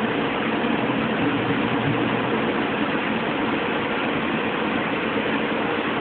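A steady, unchanging machine-like drone, much like an engine idling, with no clear strikes or changes.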